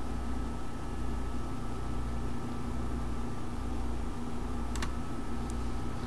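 Steady background hum and hiss from the recording microphone's signal chain, with a low drone, a faint thin high tone and one short click a little before the end.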